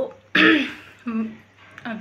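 A woman coughs once, a short throat-clearing cough, about half a second in.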